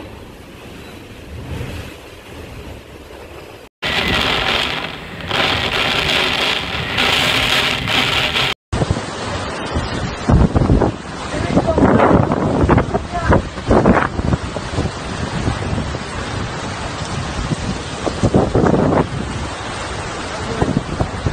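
Typhoon-force wind and rain: gusts buffeting the microphone in a rushing noise. It is moderate at first, turns much louder after about four seconds, and in the second half comes in repeated sudden blasts.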